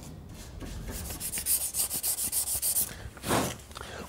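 Fast, even rubbing strokes by hand on car body metal, several a second, ending with one louder scrape a little after three seconds in.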